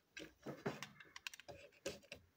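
A run of irregular light clicks and taps of hard plastic toy train parts being handled: a toy locomotive's plastic chassis turned over in the hand.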